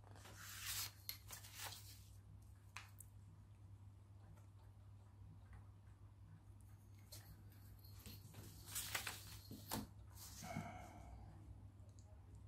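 Faint rustling and scraping of paper sheets handled and marked with a pencil against a steel ruler, in short bursts about a second in and again from about seven to ten seconds, over a steady low hum.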